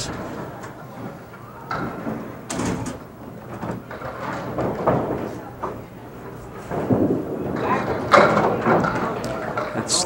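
Indistinct chatter of bowlers and onlookers in a bowling hall. A couple of knocks from the lanes are heard, one about seven seconds in.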